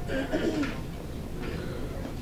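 A short, muffled, low voice sound in the first second, over a steady background hum.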